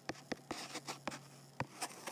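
Stylus tapping and sliding on a tablet's glass screen during handwriting: a faint, irregular run of short clicks.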